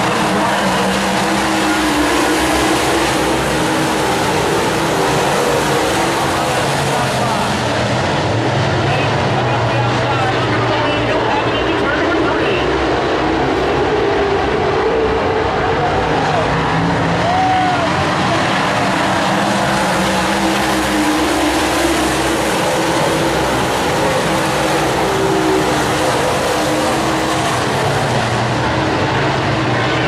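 A field of dirt super late model race cars with V8 engines running around the track, loud and continuous, their engine pitch rising and falling as the cars accelerate and pass.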